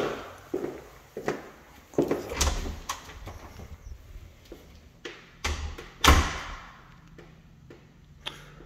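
Interior door being handled: a string of knocks and thuds, the loudest about six seconds in, with quiet gaps between them.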